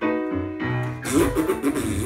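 Piano accompaniment of a comedy song. About a second in, loud blown raspberries (rasping lip-buzzes) come in over it.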